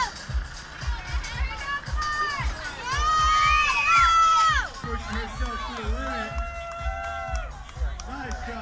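Crowd of spectators shouting and cheering encouragement, several voices overlapping with long held shouts, loudest about three seconds in.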